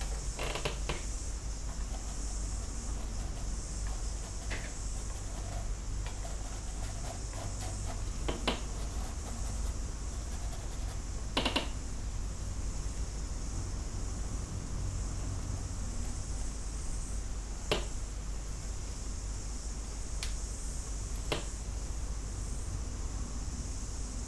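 Brush and painting tools clicking against the palette, a handful of short sharp clicks a few seconds apart, over a steady hiss and low hum.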